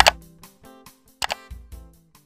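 Outro music with two sharp click sound effects, one right at the start and another a little over a second in: a subscribe-button click and then a bell click.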